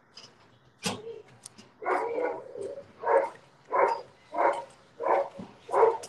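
A dog barking repeatedly at a steady pace, about one bark every two-thirds of a second, heard over a video call's audio. A sharp click comes about a second in.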